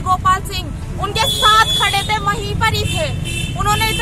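Mostly speech: a woman talking excitedly, over a steady low rumble of street traffic.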